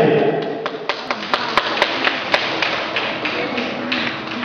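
Irregular sharp taps and clicks, about a dozen over a few seconds, densest in the middle, over a faint steady hiss.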